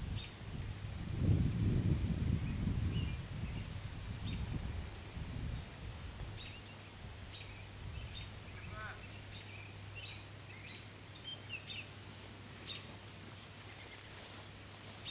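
Scattered faint bird chirps over outdoor quiet, with a low rumble on the microphone for the first several seconds, then a faint steady low hum.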